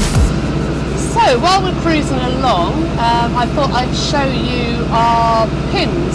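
A steady low hum of the canal boat's engine running while under way, with a person's voice talking over it. Loud music cuts off right at the start.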